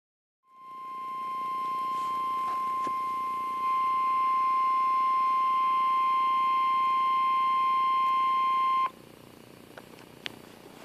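NOAA Weather Radio warning alarm: the steady 1050 Hz alert tone from a weather-alert radio's speaker, signalling that a warning broadcast follows. It holds one unwavering pitch for about eight seconds, grows a little louder partway through, then cuts off abruptly.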